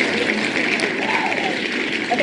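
A recorded crowd clapping and cheering, the winner sound effect of an online name-picking wheel, signalling that a name has been drawn.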